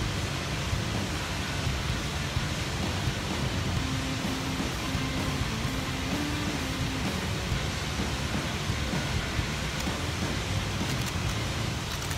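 Steady rushing hiss of a shallow river flowing over rocks.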